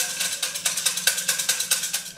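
Fortune sticks rattling in a wooden cylinder shaken by hand (Thai siam si, or kau cim), a fast run of clicks at about ten a second.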